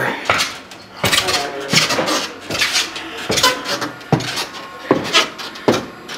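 Footsteps climbing a wooden attic ladder into an attic: a series of sharp knocks and clatters, about one every half second to a second.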